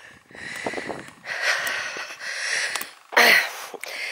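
A man's breathing close to the microphone: several noisy breaths in and out, the loudest a short one near the end.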